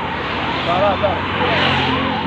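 Road traffic: a motor vehicle's engine running steadily as it passes close by, with a broad noise swell near the end, under faint voices.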